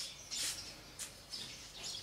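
Faint background chirping: a few short high-pitched calls over low, steady room noise.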